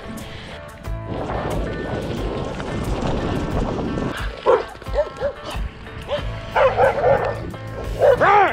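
Dog barking: a few short barks in the second half, the loudest cluster near the end, over background music.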